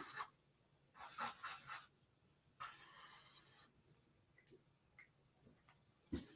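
Faint scratching of a marker drawing on paper, in two short spells of strokes as a suncatcher sketch is drawn.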